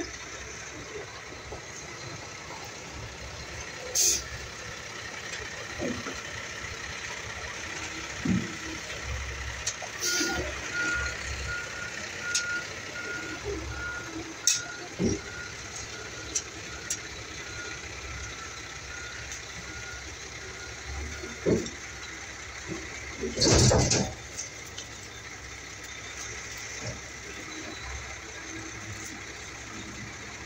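Scattered knocks and clicks of light-fixture parts being handled by hand, the loudest a short clatter about two-thirds of the way through. In the middle, for about six seconds, a vehicle's reversing alarm beeps about twice a second over a steady outdoor background hum.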